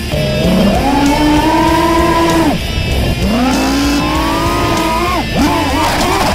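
FPV quadcopter's brushless motors whining under throttle: the pitch rises and holds, drops sharply, then rises and holds again. Near the end it jumps about erratically as the quad crashes into dry corn stalks.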